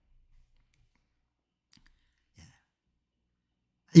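Near silence through a pause in a man's talk, broken by a faint short sound about two and a half seconds in; his speech starts again right at the end.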